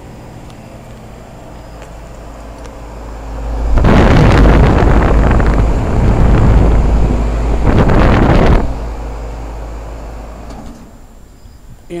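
Goodman heat pump outdoor unit with a Copeland scroll compressor running in cooling mode, a steady hum. About four seconds in, a loud rushing noise takes over for about five seconds, then eases off. Near the end the hum dies away as the unit shuts off.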